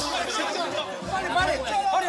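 Several voices talking over one another: lively chatter and calling out in a large studio.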